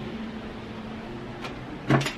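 Home air conditioning running with a steady low hum, just after it has kicked on. A single knock near the end.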